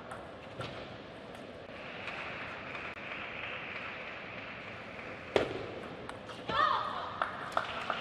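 Table tennis ball struck with a bat: one sharp, loud click about five seconds in, followed by a few fainter clicks of the ball on bat and table in a short exchange.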